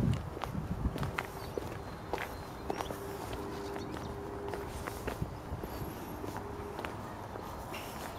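Footsteps on an asphalt path, a person walking at an unhurried pace, heard as light irregular taps about twice a second over quiet outdoor background noise. A brief low rumble comes at the very start.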